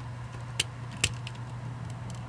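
Fingers handling a small die-cast toy truck and its wheels: two light, sharp clicks about half a second apart, over a steady low hum.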